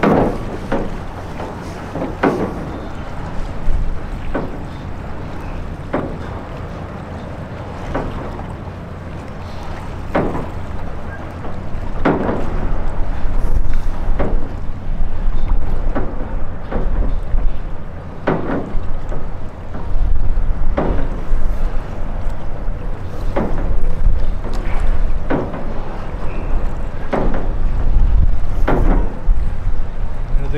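Steel clanging about every two seconds, each clang ringing briefly, over a low wind rumble on the microphone that grows louder partway through.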